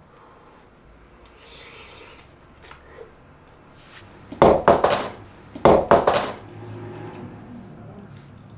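Two loud bursts of breath about a second apart: a person blowing on a hot spoonful of soupy rice stew to cool it.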